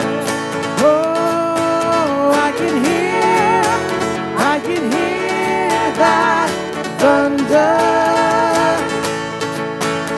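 Live worship band playing a song: strummed acoustic guitar, drums and keyboard, with a man and a woman singing the melody.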